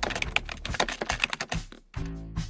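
Rapid keyboard typing clicks, used as a sound effect for on-screen text being typed out, with faint music beneath. The typing stops shortly before the end.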